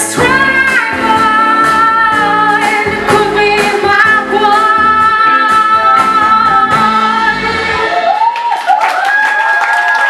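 Female lead vocalist holding one long note over a live band of electric guitar, keyboards, bass and drums at the close of a pop song. About eight seconds in the bass and drums stop, leaving her voice to finish with a short wavering run.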